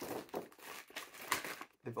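Clear plastic packaging bag crinkling as it is handled, an irregular crackle that dies away briefly near the end.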